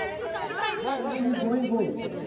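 Several people talking at once, overlapping voices of a group chattering.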